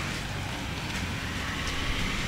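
Steady outdoor background noise with a low rumble, no distinct events.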